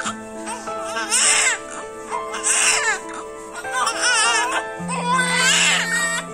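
Newborn babies crying in short bursts, about four in a row roughly a second and a half apart, each cry wavering in pitch.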